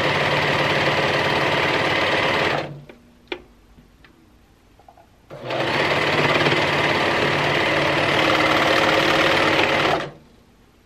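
Serger (overlocker) running steadily while stitching a stretched knit neckband on, stopping about a third of the way in. After a single click in the pause it runs again for about five seconds, then stops. Sewing in short runs like this, stopping at each notch to stretch the band, is how the band is eased on evenly.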